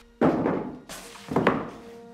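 Three sudden thuds in quick succession, about a second apart, over soft sustained background music.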